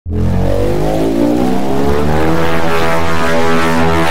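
Oscilloscope-music audio: a synthesized buzzing tone, rich in overtones, whose waveform draws a shape on a vector scope. It starts suddenly and runs loud and steady, its pitches gliding downward during the first second or so.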